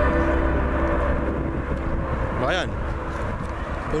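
Low, steady outdoor rumble on a hand-held microphone, with one short call from a person's voice, bending up and down in pitch, about two and a half seconds in. The last of a music track fades out at the very start.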